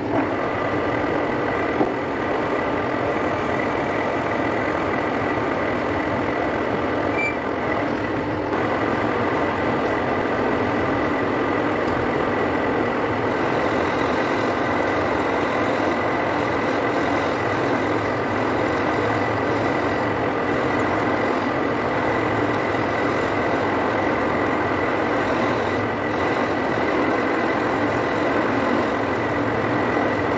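Metal lathe running steadily, with a constant high-pitched whine over the machine's noise, while a tool cuts grooves and a profile into the spinning metal workpiece.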